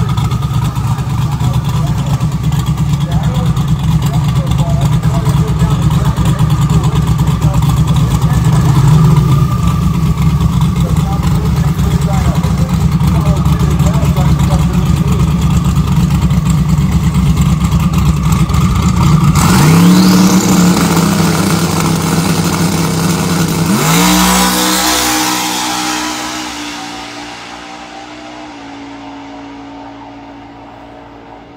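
Sixth-generation Camaro drag car running loud and steady on the starting line after its burnout, then launching about two-thirds of the way in. The engine pitch climbs twice as it pulls through the gears on a drag pass, and the sound fades quickly as the car runs away down the track.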